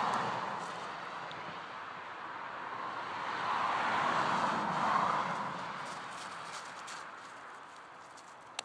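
A vehicle passing by on a road: its tyre and road noise swells to a peak about four to five seconds in, then fades away.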